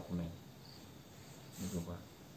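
Faint insect chirping, like crickets, in a quiet background between a man's short spoken syllables.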